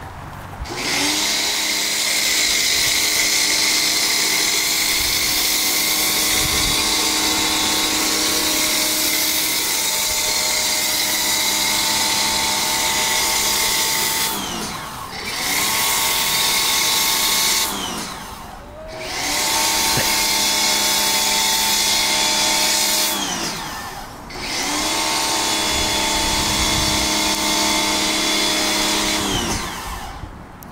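Pressure washer running a foam cannon: a steady motor-and-pump whine under the hiss of the spray. It stops three times, about halfway through, about two-thirds through and near the end, its pitch sliding down as it spins down, then starts up again.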